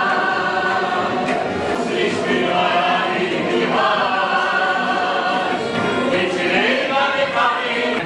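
A group of voices singing a song together, in long held notes that change pitch every second or so.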